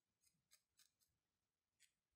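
Very faint, crisp crunching ticks, five in about two seconds, of a barbed felting needle being stabbed into a ball of wool; otherwise near silence.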